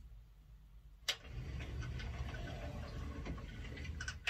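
A sharp click about a second in, followed by a steady low rumble with faint crackling.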